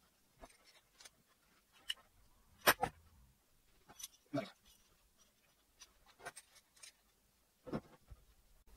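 Metal spanners clicking and knocking against a brass pipe fitting and a solenoid valve body as the fitting is tightened, a scattering of sharp taps with the loudest about three seconds in.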